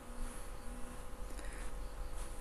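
Faint steady buzzing hum over background hiss, with two short low tones in the first second.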